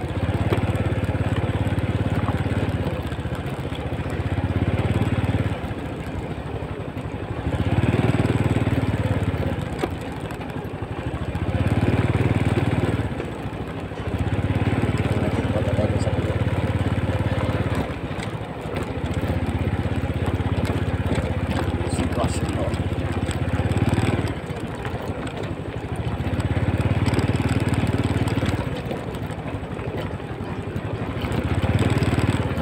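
Vehicle engine running under way on a rough dirt road, its level swelling and easing every few seconds as the throttle opens and closes.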